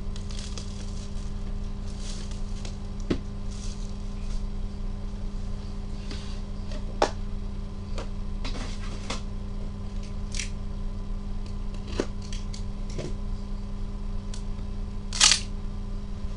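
Plastic shrink-wrap being torn and crinkled off a sealed trading-card box by gloved hands, with scattered sharp clicks and one louder crackle near the end. A steady low electrical hum runs underneath.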